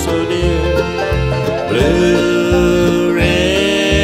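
Bluegrass band playing an instrumental break with banjo and guitar over a steady bass line. A lead instrument holds long notes, sliding up into a sustained note about halfway through.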